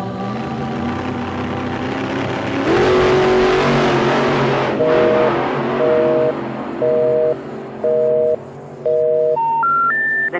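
Music track built on telephone sounds: a noisy swell about three seconds in, then a busy signal of five two-tone beeps, each about half a second with half-second gaps, followed near the end by three short rising special-information tones that lead into a recorded operator intercept message.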